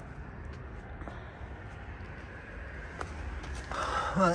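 Steady low rumble of road traffic, with a single sharp click about three seconds in.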